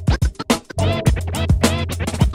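Vinyl record scratched on a turntable in quick back-and-forth strokes that sweep up and down in pitch, over a hip-hop beat with a steady bass line.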